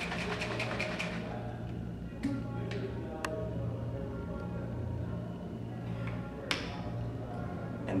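Plastic shaker cup of powder and almond milk shaken hard, a rapid even rattle of about five shakes a second that stops about a second in. A few separate clicks and a knock follow.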